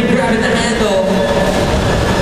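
Loud, steady hall din: a rumble with a voice carrying over it.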